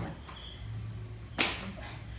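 Crickets chirping steadily in a high-pitched drone, with one short burst of noise about one and a half seconds in.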